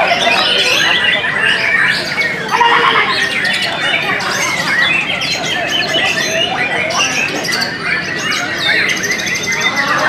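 White-rumped shamas singing together at a songbird contest: a dense tangle of overlapping whistles and chirps, with a rapid high trill near the end.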